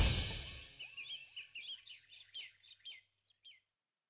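Background music fades out. Then birds chirp in a quick run of a dozen or so short calls, many dropping in pitch, which stops about three and a half seconds in.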